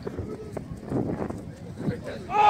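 Soccer players shouting across a grass pitch, with a few scattered thuds.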